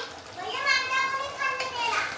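A young child's high-pitched squeal: one long drawn-out call of about a second and a half, dipping in pitch at the end.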